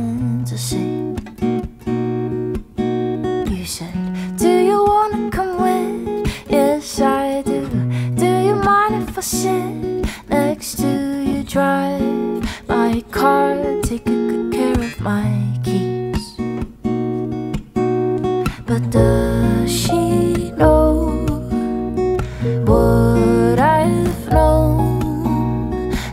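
Live acoustic music: an acoustic guitar played in chords over an upright double bass, with a woman singing the melody. The bass grows heavier about 19 seconds in.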